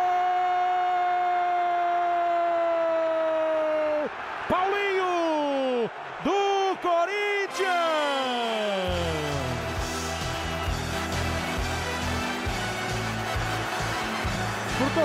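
A Brazilian TV football commentator's goal cry: one long held shout of about four seconds, then shorter shouted phrases and a long falling yell. From about nine seconds in there is music with a steady beat.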